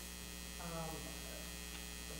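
Steady low electrical hum running under the room sound, with a faint voice saying "um" about half a second in.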